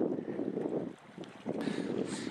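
Sea water washing and lapping among the rocks of a tidal pool, with wind noise on the microphone. It dies away for a moment about a second in, then picks up again.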